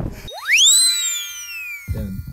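Edited-in transition sound effect: a whistle-like tone that sweeps quickly up in pitch, then glides slowly down, over a few steady faint ringing tones, with the background sound dropped out beneath it.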